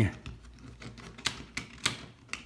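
Three light clicks of cardboard game pieces being handled and set down on a board game board, in the second half.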